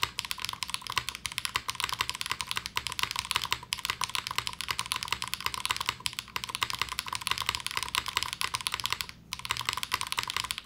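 Mechanical keyboard with HMX Jammy switches on a gasket-mounted plate with plate foam, being typed on steadily while it sits on a desk pad. It gives a dense, unbroken run of keystroke clacks with one brief pause about nine seconds in.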